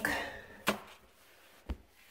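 Two brief knocks: a sharp tap a little under a second in and a duller, lower thump near the end, with faint hiss between them.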